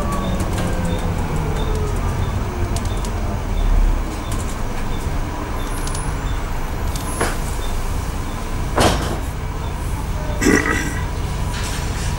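Bus engine and cabin noise heard from inside a moving bus: a steady low rumble, with the engine note falling near the start. There is a low thump about four seconds in, and a few sharp knocks or rattles in the second half.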